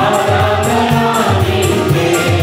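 A small mixed choir singing a Telugu Christian worship song to keyboard accompaniment with a steady beat. A tambourine jingles in time with the beat.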